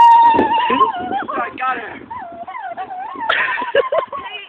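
A child's high-pitched voice holding a long, wavering wail or sung cry that slides up and down in pitch. A louder, noisier shout or scuffle comes in near the end.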